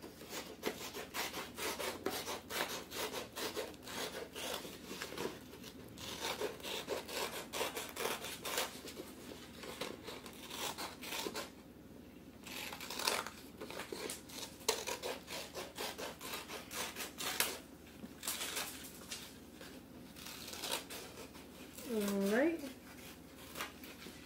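Scissors snipping through a sheet of paper to cut out a circle: a run of short, quick cuts with the paper rustling as it is turned, and a couple of brief pauses.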